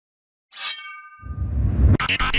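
Logo intro sound effect: about half a second in, a bright metallic clang rings out with several tones and fades, then a low rumble swells up toward the end.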